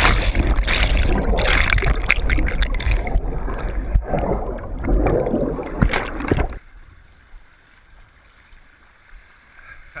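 Turbulent river water churning and bubbling loudly around a submerged waterproof action camera. About six and a half seconds in the sound cuts off sharply as the camera comes above the surface, leaving the fainter steady rush of the rapids.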